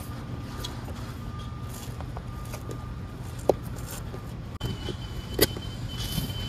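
A steady low background rumble, with faint rustling and a couple of short clicks about three and a half and five and a half seconds in as chopped strand mat fiberglass is torn by hand and pressed against the boat's gelcoat.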